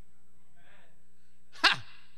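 One short, sharp, loud vocal burst from a man about a second and a half in, with a faint breathy sound a second before it.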